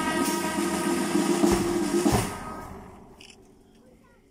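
Brass band with sousaphones and bass drums holding a final sustained chord, punctuated by two bass drum strikes, cutting off about two seconds in and dying away.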